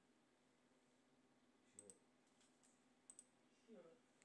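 Faint clicks of a pointer button, two quick double clicks about a second and a half apart, as Next is clicked in Windows Setup.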